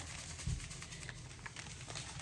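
Faint handling noise in a quiet room: a soft low thump about half a second in and a few light clicks as a small packet is moved up close to the phone.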